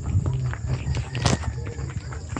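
Footsteps on a loose dirt road, with irregular low scuffs and clicks and one sharper knock a little past halfway.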